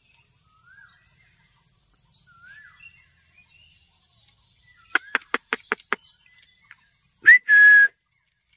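Rose-ringed parakeets giving faint short rising chirps, then a quick run of about eight sharp clicks. Near the end comes a loud whistle: a short upward note, then one steady held tone.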